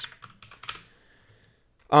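A few computer keyboard keystrokes in the first second, then quiet until a man's voice starts at the very end.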